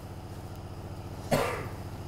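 Steady low electrical hum on the handheld microphone's sound system, with one brief sharp noise about one and a half seconds in.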